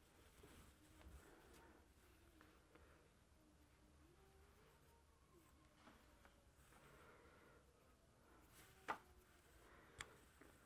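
Near silence: faint handling of yarn as a needle hem stitches across the warp threads of a rigid heddle loom, with one sharp click near the end.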